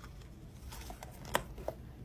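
Low room tone with a few soft, separate clicks, the sharpest a little past the middle.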